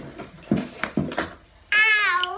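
A few soft taps and knocks of toys being handled, then near the end a loud, high, meow-like cry with a wavering pitch that dips and rises again.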